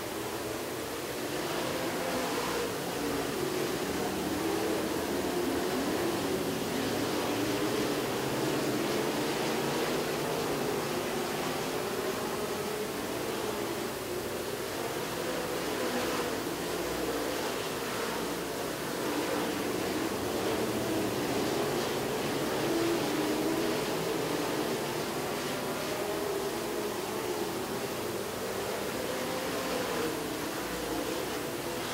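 Several dirt-track stock car engines racing around the oval together, a steady drone whose pitch wavers up and down as the cars come through the turns and accelerate down the straights.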